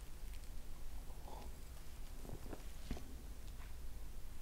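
A person sipping and swallowing beer from a glass, heard as a few faint, short clicks and soft mouth sounds over quiet room tone.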